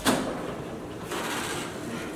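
A door being opened: a sharp click right at the start, then a brief rushing scrape about a second in as the door swings open.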